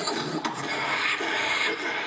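Beatboxer imitating a jet airliner's engines at takeoff with his mouth through a microphone: a steady rasping rush.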